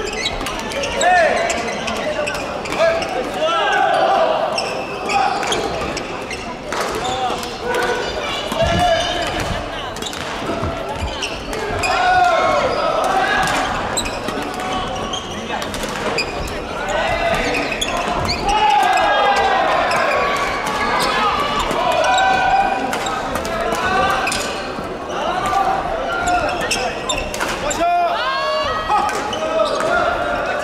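Badminton play in a large hall: sharp racket hits on the shuttlecock and footfalls on the wooden court floor, under continual voices echoing around the hall.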